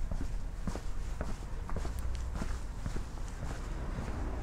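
Footsteps of a person walking at a steady pace on a paved lane, about two steps a second, over a steady low rumble.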